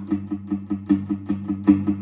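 Electric guitar through an amp, one chord picked in a fast, even rhythm of about five strokes a second.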